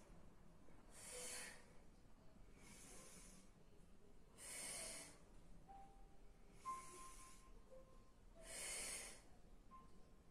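Faint, paced breathing of a woman doing a Pilates side-lying leg lift: soft breaths in and out, one about every two seconds, timed to the legs rising and lowering.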